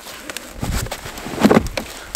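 Plastic side panel of a BRP Ski-Doo Summit snowmobile being unlatched and pulled off by hand: handling rustle with a few sharp clicks, loudest about one and a half seconds in as the panel comes free.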